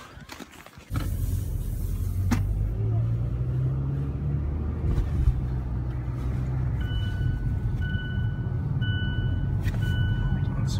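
Steady low rumble of road and engine noise inside a moving car's cabin, starting about a second in. Near the end an electronic beep sounds from the car every second or so, each beep about half a second long.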